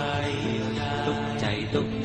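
A song sung in Thai over instrumental backing, the voice holding long drawn-out notes.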